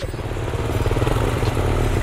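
Kawasaki KX112 two-stroke dirt bike engine running steadily at idle, with an even, rapid pulse and no revving.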